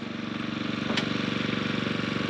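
Small gasoline engine of a drywasher (dry washing machine for placer gold) running steadily with a fast, even chug. A single sharp click about halfway through.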